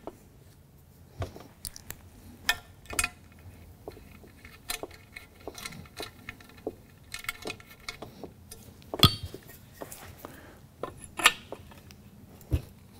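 Irregular small metallic clicks, clinks and light knocks from handling a screw and a metal clothesline spreader bar with its joiner, with a few sharper knocks, the strongest about nine seconds in.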